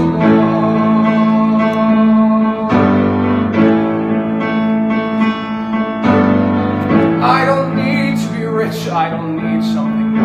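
Piano accompaniment to a musical-theatre song, playing held chords that change about three, six and seven seconds in, in an instrumental passage without singing.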